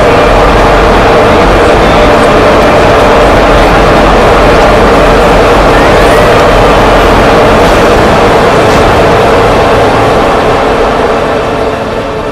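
Loud, steady rushing wind as a cartoon sound effect, a gale blowing through a room, fading out over the last two seconds.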